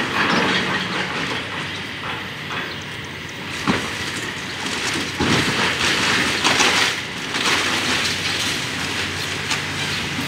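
Demolition excavator working in building rubble: a steady engine hum under rattling and scraping of debris, with sharp knocks about four and five seconds in and louder crashing a little before seven seconds.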